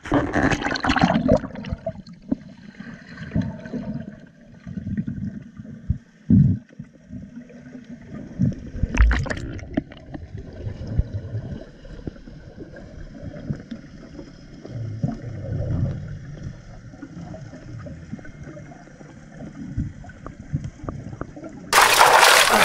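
Water heard through an action camera dipping under the sea: a splashy rush as it goes below the surface in the first second or so, then muffled, low, uneven gurgling of water, with a brief sharper burst of bubbling about nine seconds in.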